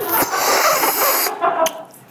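A loud airy slurp of sauce sucked off the rim of a plate tipped up to the mouth, lasting just over a second, followed by a couple of small mouth noises.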